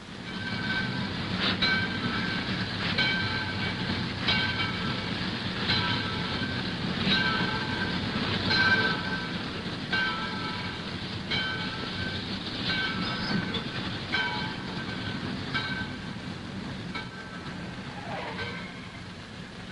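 A train running on rails: a steady low rumble with a wheel clack over the rail joints about every second and a half, each clack with a brief metallic ring.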